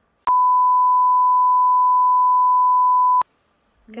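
A censor bleep: one steady, pure 1 kHz beep about three seconds long that starts and cuts off abruptly, dubbed over the conversation.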